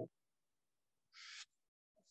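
Near silence in a pause in a man's speech, broken just over a second in by one short, faint hiss: the speaker drawing breath before the next phrase.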